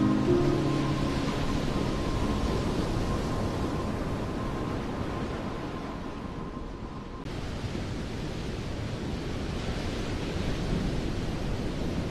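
Wordless gap in a slowed pop song: the last piano notes fade in the first second, leaving a steady soft rushing noise with a faint held high tone. About seven seconds in, the tone stops and the noise comes back abruptly after a gradual dip.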